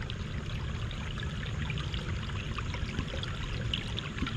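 Steady running and trickling of water in a pond fed by small waterfalls.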